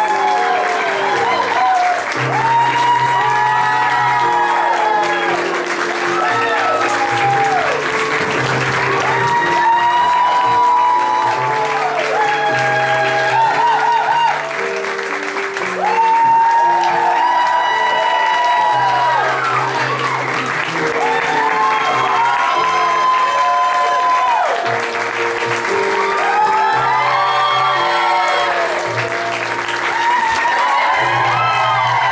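Audience and cast applauding steadily over loud recorded music with a melody and a stepping bass line.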